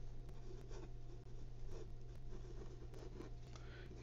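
Faint scratching of a Reynolds Trimax pen writing a word in cursive on a sheet of paper, in short uneven strokes, over a low steady hum.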